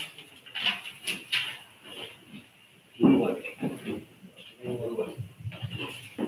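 Indistinct murmured voices and handling noises, a few sharp knocks and rustles in the first second or so, then short bursts of low voices about halfway through.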